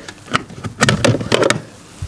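Plastic fuse box cover of a Lada Niva being unlatched at its top and pulled off by hand: a handful of sharp plastic clicks and rattles.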